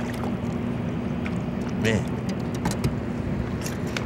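Small splashes in shallow water as a released trout slips from a hand, over a steady low hum.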